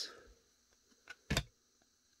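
Stiff chromium trading cards handled in a stack: a faint tick, then one sharp click a little over a second in as a card is slid off the front.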